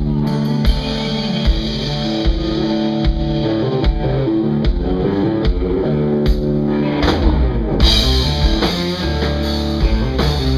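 Rock band playing live: overdriven electric guitars and bass over a drum kit, with a burst of cymbals about eight seconds in.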